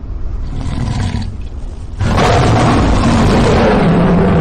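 Lion roar sound effect from a TikTok Live 'Lion' gift animation: a low rumbling growl, then a much louder, longer roar starting about two seconds in.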